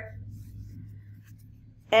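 Faint, soft rustling of a damp paper towel being folded over dried lima beans.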